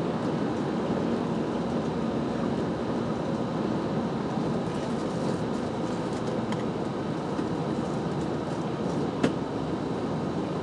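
Steady vehicle running noise, like a cab on the move, heaviest in the low end. One sharp click sounds about nine seconds in.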